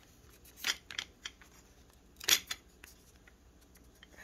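Diamond-painting coasters being handled in a wire coaster holder: a few short clicks and scrapes as the coasters are lifted and knock against each other and the holder, the loudest about two and a quarter seconds in.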